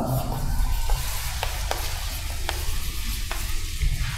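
Chalk scratching and tapping on a blackboard as words are written, a scatter of short irregular ticks over a steady hiss and low hum.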